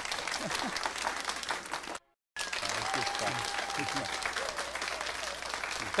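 Applause, broken by a short dead-silent gap about two seconds in, then resuming with faint laughter and voices underneath.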